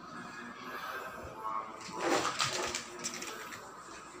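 A domestic cat meowing, with a louder call about halfway through.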